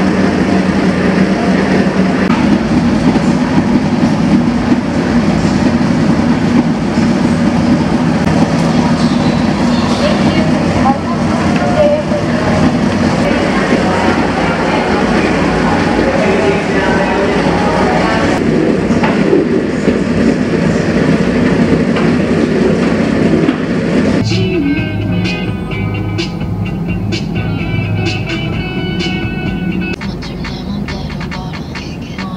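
Busy restaurant room noise: indistinct chatter over a steady low hum. About 24 seconds in it cuts to background music with an even beat.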